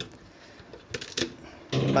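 A few light clicks and taps of hard plastic toy parts being handled and pressed together, about a second in.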